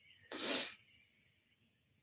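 A single short, sharp rush of breath, about half a second long.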